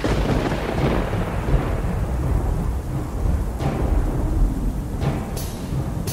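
Thunder with rain: a sudden crash at the start rolls out into a long, low rumble over a dark music bed.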